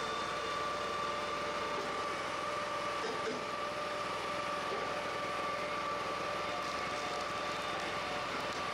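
Small gasoline engines of a firewood processor and its conveyor belt running steadily, an even drone with a constant high whine over it.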